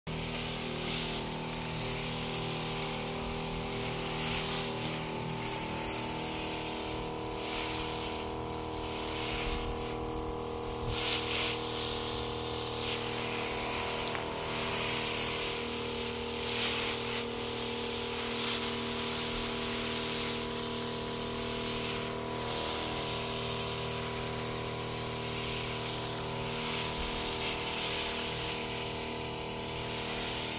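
Motorized pesticide sprayer running steadily, its pump drone under the hiss of spray from a hand-held wand nozzle. The hiss swells and eases a little as the spraying is directed over the garlic plants and soil.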